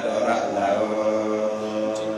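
A man chanting into a handheld microphone, holding long steady notes.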